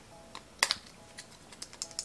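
Small jar of vitamin C mixing crystals shaken in the hand, the crystals rattling inside and sounding like salt: a few light, scattered clicks.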